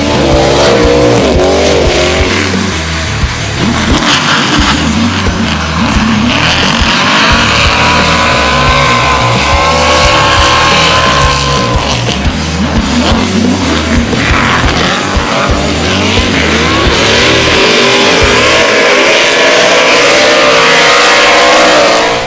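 Drift cars in a tandem run, among them a Ford Mustang RTR, with engines revving up and down hard and tyres squealing as they slide. Background music with a heavy beat plays underneath.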